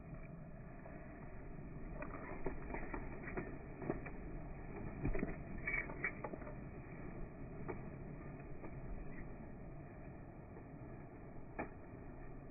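Slowed-down slow-motion audio of a flock of feral pigeons taking off from grass. It is muffled and low, with scattered dull clicks of wing flaps over a steady rumble.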